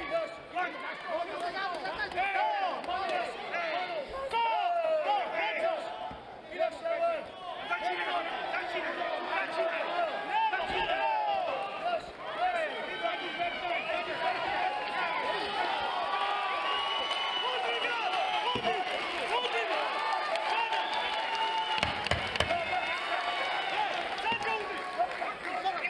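Fight crowd shouting and cheering, many voices overlapping without a break, with a few dull thumps in the mix.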